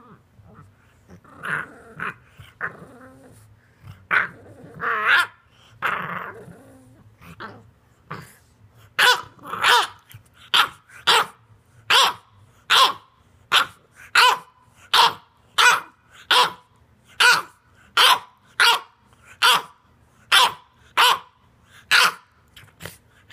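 English bulldog puppy play-growling at its bed: irregular rough growls at first, then from about nine seconds in a steady run of short, sharp barks, a little more than one a second.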